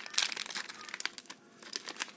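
Printed plastic blind-bag packet crinkling as fingers work inside it for a stuck piece. The crackles are irregular and thin out after about a second.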